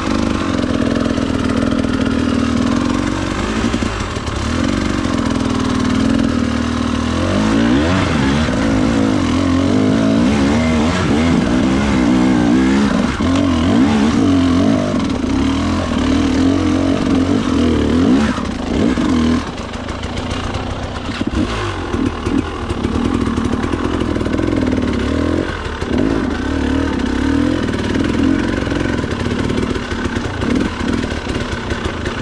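Husqvarna enduro motorcycle engine being ridden slowly over rocks, revving up and down again and again, its pitch rising and falling with the throttle.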